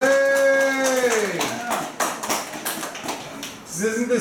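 A voice holds a long note, then slides down in pitch about a second in. It is followed by a quick, irregular run of sharp percussive hits for the next two seconds.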